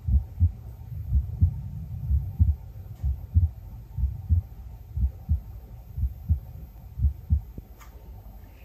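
A person's heartbeat picked up through a stethoscope on the chest: a steady double thump, lub-dub, about once a second.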